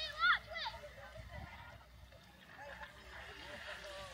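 Faint voices of people on a beach, with a brief high-pitched cry in the first second.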